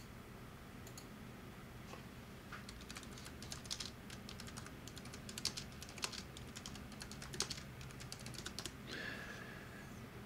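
Faint, irregular typing on a computer keyboard, a run of light key clicks from about three seconds in until near the end, over a low steady hum.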